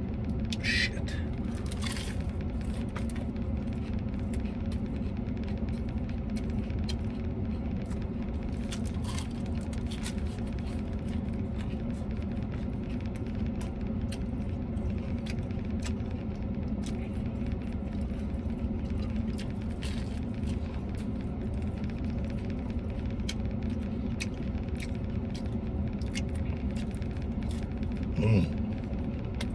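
Steady low rumble of a vehicle idling, heard inside the cab, with scattered faint clicks and crunches of chewing a crunchy taco shell.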